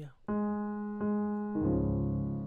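Piano chords in D flat: a chord struck and held, struck again about a second in, then a fuller chord with a low bass note just before the end.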